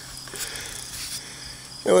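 Insects chirping in a steady, evenly pulsing high trill in the background. A man's voice starts near the end.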